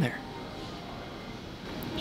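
Steady, even background noise of an indoor room, like ventilation hum, with no distinct events.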